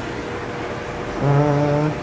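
Steady low background noise, then about a second in a man's drawn-out, flat-pitched 'uhh' while he lines up a cordless drill with a hole saw, before drilling starts.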